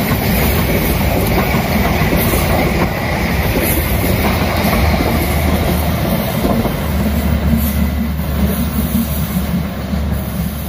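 Passenger train coaches rolling past at close range: a loud, steady rolling noise of steel wheels on the rails.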